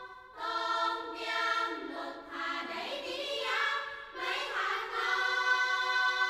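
Background music of choral singing: voices holding long notes that shift in pitch from phrase to phrase, with a brief pause just before a new phrase begins about half a second in.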